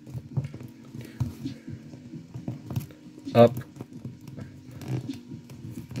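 Faint clicks and light rubbing of hands handling a plastic action figure as its head is tilted down and then up on the neck joint.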